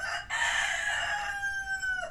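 A rooster crowing: one long call that starts about a third of a second in, its pitch dropping slightly toward the end.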